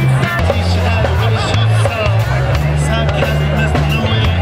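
Live rock band playing: electric guitars, bass and drum kit, with a woman singing over a bass line that moves between held low notes.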